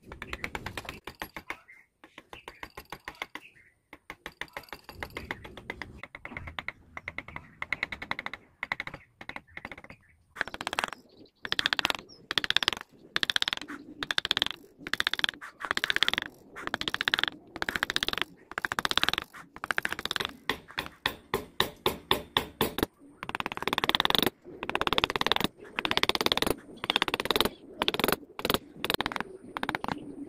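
Hand carving chisel cutting into wood in a quick series of short scratchy strokes. The cuts are faint for the first ten seconds or so, then louder and steadier at about two a second.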